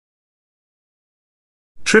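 Dead silence between narration lines, broken near the end as a synthesized-sounding narrator's voice begins the word "Trip".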